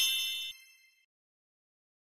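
Tail of an animated logo sting: a bright, bell-like chime ringing out, cut off about half a second in and fading away by about a second in.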